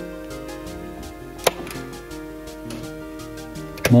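Background music with sustained tones, and a sharp snap about a second and a half in: a staple gun fixing chicken wire over a barn vent hole.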